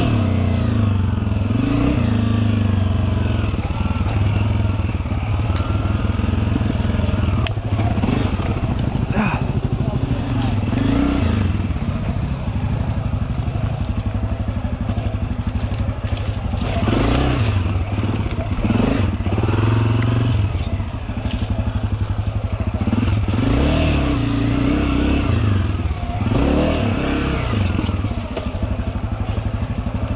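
Dirt bike engine running at low revs on a steep downhill trail, its pitch rising and falling as the throttle is worked, with knocks and rattles from the bike over the rough ground.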